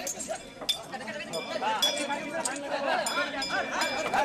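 Overlapping men's voices talking, with repeated short, ringing metallic clinks of heavy iron chains on the elephants' legs.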